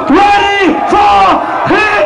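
A loud amplified voice shouting a string of short calls, each rising and falling in pitch, about two a second, over a cheering club crowd.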